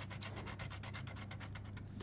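Scratch-off lottery ticket being scratched with quick, evenly repeated scraping strokes, about eight to ten a second, rubbing off the coating over the control-code field.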